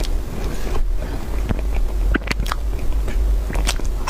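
Close-miked chewing of soft cream cake, with wet mouth clicks and smacks coming irregularly, in clusters about halfway through and near the end. A steady low rumble runs underneath.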